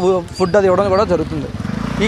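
Engine of a passing road vehicle under a man's speech, its pitch rising over the second half.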